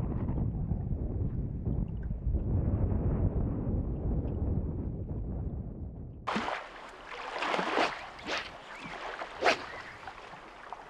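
Low wind rumble on the microphone that fades away over about six seconds. Then the sound changes abruptly to a thinner outdoor ambience with a few brief, gusty swishes.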